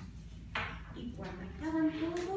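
A woman's storytelling voice: a brief hiss about half a second in, then a long drawn-out syllable near the end.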